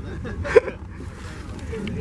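Faint background voices over a low steady rumble, with one short, sharp vocal sound about half a second in.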